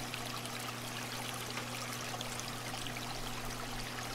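Aquarium water trickling and splashing steadily, as from a filter's outflow, over a low steady hum.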